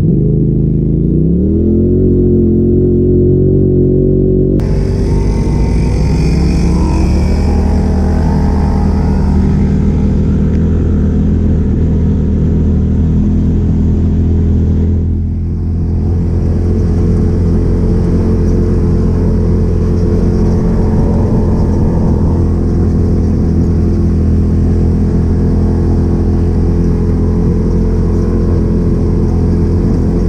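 Polaris RZR Turbo side-by-side engine heard from inside the cab, revving up over the first couple of seconds and then running at a steady speed as the machine drives along.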